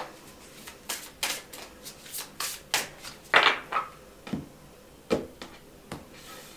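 Tarot cards being shuffled and handled: an irregular run of short, sharp card slaps and riffles, the loudest about three and a half seconds in.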